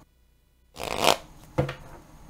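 A tarot deck shuffled by hand. After a moment of dead silence at the start, there is a short rustle of cards about a second in, then a single sharp click a little later.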